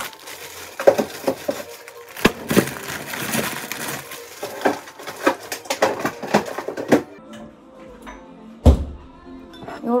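Plastic bag of frozen sweet potato chunks rustling as pieces are picked out and set clicking and knocking into a ceramic bowl, then one heavier thump near the end.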